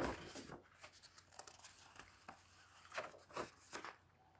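Faint rustling and a few soft clicks in a quiet small room, a little louder at the very start and again near the end.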